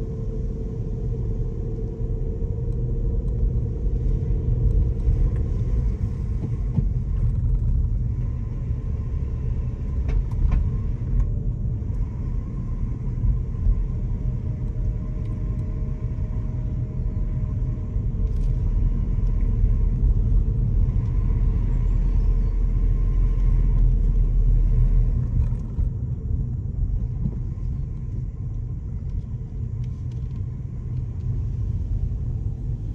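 Car driving slowly along a lane, heard from inside the cabin: a steady low rumble of engine and tyres on the road. The deepest part of the rumble eases about five seconds before the end.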